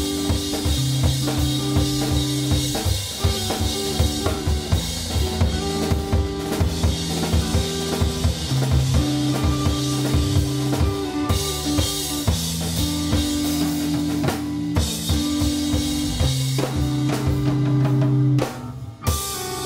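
A live organ trio playing, with a busy drum kit (snare and bass drum hitting densely) over long held organ chords and electric guitar.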